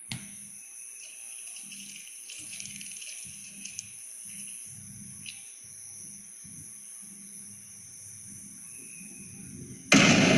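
Movie-trailer forest ambience: a steady high-pitched insect drone with a few faint clicks a few seconds in, cut off near the end by a sudden loud hit.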